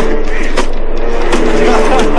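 A steady droning rumble, as of a subway train running, with sharp thuds of kicks landing on a man on the floor, the first about half a second in and two more near the end.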